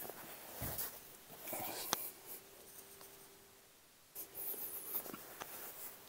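Faint brushing and scuffing of a body and bare feet shifting on an exercise mat while moving between a forearm plank and a side plank, in soft bursts, with one sharp click about two seconds in.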